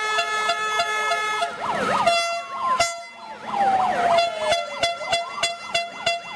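Protest noisemakers: air horns blaring in long held blasts, with hand-held sirens wailing up and down over them. A rapid run of clicks joins in over the second half.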